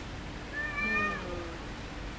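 A cat meowing once: a single drawn-out call of about a second, starting about half a second in.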